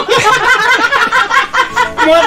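A man laughing in a run of short, quick chuckles.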